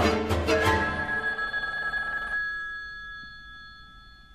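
String quartet music with taped sounds. Bowed strings play loudly for about a second, then give way to a sustained high ringing tone that slowly fades.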